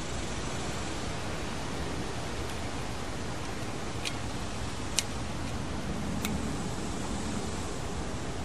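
Three faint clicks in the second half from the reset button of a GFCI outlet being pressed, over a steady hiss. The button won't latch because the outlet's line wires are hooked to its load terminals.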